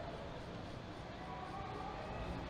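Faint, steady background noise of the velodrome broadcast, with no clear event in it.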